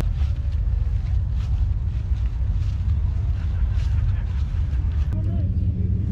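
A steady low rumble with faint voices of people talking in the background, and a short voice near the end.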